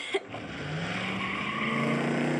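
A car speeding away, its engine revving higher as it pulls off.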